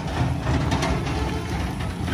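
Heavy steel straw loader being pushed on its small iron wheels over rough dirt ground: a steady low rumble with scattered clattering knocks from the frame.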